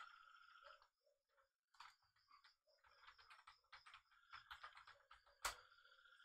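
Faint typing on a computer keyboard: a quick run of key clicks, ending in one louder keystroke about five and a half seconds in. A single click comes at the very start.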